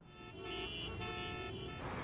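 Busy road traffic with several vehicle horns honking together, fading in and then cutting off shortly before the end.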